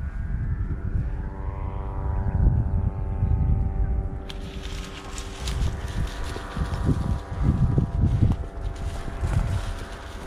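Wind buffeting the microphone and the rustle and tread of footsteps through dry grass, over the steady drone of a distant engine.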